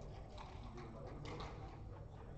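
Faint scattered clicks and taps of play at a backgammon board, over a steady low room hum.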